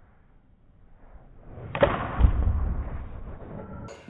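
A golf club swishing down and striking a ball off a practice mat with a crisp click about two seconds in. About half a second later comes a deep thud, the loudest sound, with a rumble that fades over the next second.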